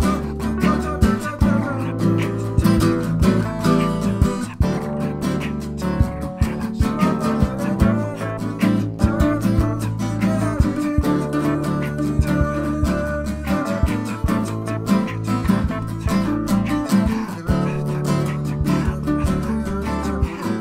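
Instrumental acoustic hip hop: strummed and plucked acoustic guitars over a steady percussive beat and bass line, with no vocals.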